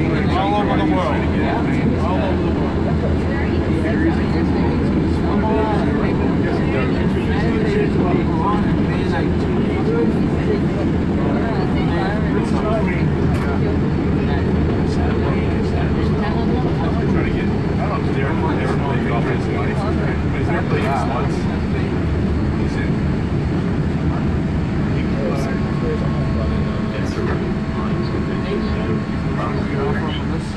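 MBTA Green Line light-rail train running through the subway tunnel, heard from inside the car: a steady, loud low rumble of wheels on rail and traction motors. A faint steady whine comes in near the end.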